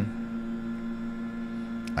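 Leaf blower running steadily, a constant drone at one unchanging pitch, heard from indoors.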